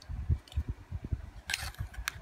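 Irregular low thumps of the phone being handled, with a short scraping rustle about one and a half seconds in as a plastic spoon is worked in a plastic pudding cup.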